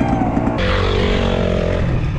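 Dirt bike engines running, with a steadier, higher engine note setting in about half a second in.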